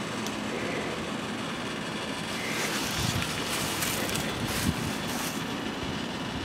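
Steady outdoor background noise with no clear source, with a few faint brief sounds in the second half.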